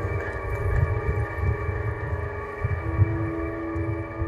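Ambient drone of several sustained tones from the musicians' electronics, with a lower held note added about three seconds in, over a low rumble.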